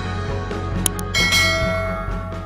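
Intro music with a steady low beat; about a second in, a bright bell chime rings out and slowly fades.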